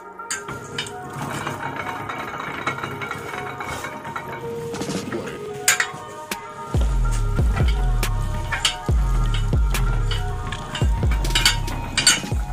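Metal clinks and knocks from a hand-cranked rubber-sheet roller mill as a slab of coagulated latex is pressed between its iron rollers, with a deep pulsing low sound coming in about seven seconds in.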